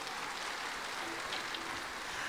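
Large audience applauding steadily, an even patter of many hands clapping.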